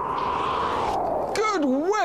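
A noisy whoosh, centred in the middle range and sinking slightly in pitch, that fades out about a second and a half in, followed by a voice; it matches a transition sound effect at a scene change.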